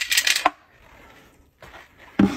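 A quick run of light metallic clinks ending in a knock, like metal snake tongs striking the rim of a plastic container, all in the first half-second.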